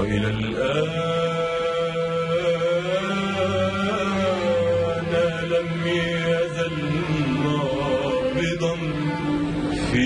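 A male singer draws out long, sliding held notes over an Arabic orchestra's strings and steady bass in a live concert recording.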